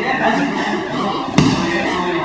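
A body thrown onto a padded training mat lands with a single sharp thud a little under halfway through, amid people talking.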